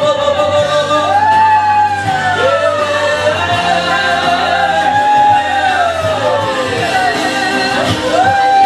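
A voice singing long, slowly gliding held notes without clear words, over steady sustained keyboard chords in worship.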